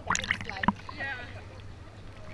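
Water splashing and sloshing as a handheld camera is lifted out of shallow sea water, with a quick run of sharp splashy knocks in the first second, the loudest near the middle of that run. A voice speaks briefly just after.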